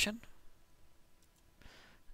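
A few faint computer clicks as text is copied, then a short breath just before speech resumes.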